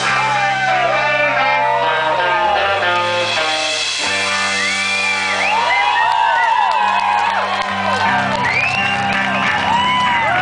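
Live rock band playing loud: electric guitars holding long chords that change every few seconds, with high notes sliding up and down above them.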